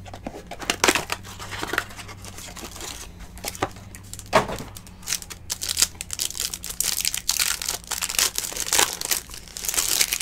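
A cardboard box of 2019 Panini Absolute Football cards being opened, then a plastic card-pack wrapper torn open and crinkled by hand. It sounds as irregular crackling and tearing that grows denser and louder in the second half.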